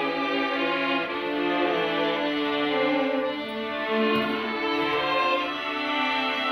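A string ensemble of about 21 players, led by violins, bowing held notes in a flowing melody, the notes changing about every second.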